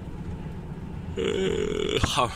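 Steady low drone of a Renault Magnum truck's engine and tyres heard inside the cab at motorway speed. Just past halfway a man makes one held, even-pitched vocal sound lasting under a second.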